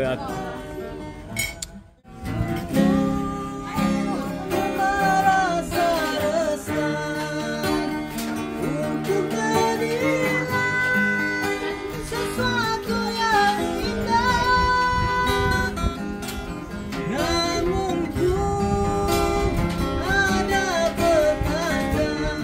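Two acoustic guitars strummed together, playing a song, with a short break about two seconds in.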